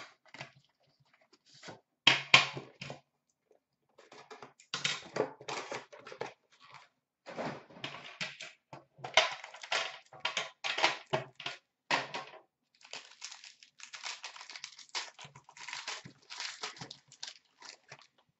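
Hands opening a box of Upper Deck Premier hockey cards: tearing and crinkling of the cardboard and wrapping, then the rustle of the cards being handled. The sound comes in irregular bursts with short pauses.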